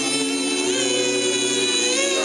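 Doo-wop vocal group singing live through a PA: a female lead with male backing harmony, holding one long chord.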